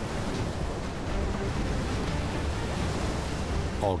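Hurricane wind and rain: a steady rushing noise with a heavy low rumble, without letup.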